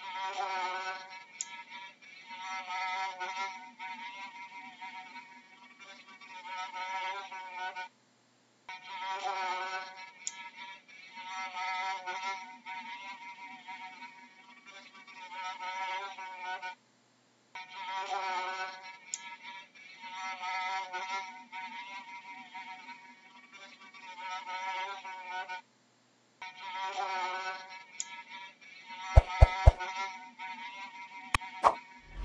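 A fly buzzing in flight, its pitch wavering as the buzz swells and fades. The recording drops to silence for a moment about every nine seconds, and a few sharp clicks come near the end.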